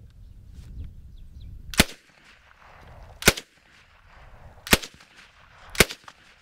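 Czech Sa vz. 26 submachine gun, chambered in 7.62x25mm Tokarev, firing four single shots about a second and a half apart. The trigger is pulled only partway, which on its progressive trigger gives one shot per pull rather than a burst.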